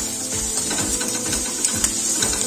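Wooden spatula stirring onions and chilli powder in oil in a kadai, with a string of short scrapes and knocks against the pan, over soft background music.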